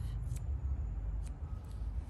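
A few faint snips of blunt-tipped grooming scissors cutting a dog's facial fur, over a steady low rumble.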